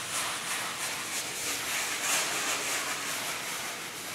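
Cheesecloth being rubbed and dabbed over a wet glazed wall, a rough, high swishing rustle that swells and fades with each stroke.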